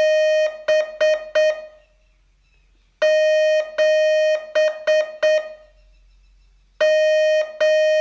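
Morse code tone sending the digit seven, dah-dah-di-di-dit, at a slow learner's speed: one steady pitch keyed in long dashes and short dots. The group repeats with a pause of about a second and a half between sends.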